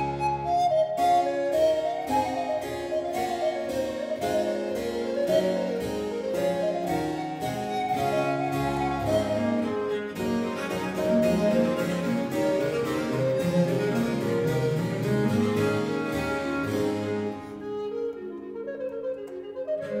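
Baroque trio sonata in a brisk Allegro, played on recorder, viola da gamba, archlute and harpsichord. The harpsichord plucks steady running notes under the recorder's melody, and the texture grows softer for the last couple of seconds.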